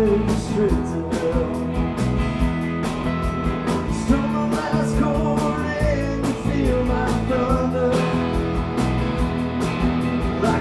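Live rock band playing: electric guitar over drums keeping a steady beat, with a man singing into the microphone.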